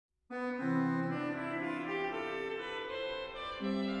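Organ playing the opening chords of a trumpet tune, starting a moment in with held, full chords and moving to a new chord near the end.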